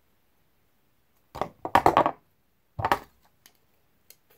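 Hand shears snipping through wooden craft sticks: a quick cluster of sharp wooden cracks about a second and a half in, then one more near three seconds.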